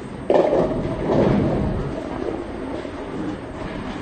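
Bowling ball smashing into the pins about a quarter second in, followed by the pins clattering and scattering on the pin deck for a couple of seconds as the noise dies down.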